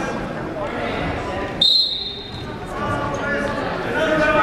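Referee's whistle: one short, sharp blast about one and a half seconds in, signalling the start of a wrestling bout. People talk in the background of the echoing gym.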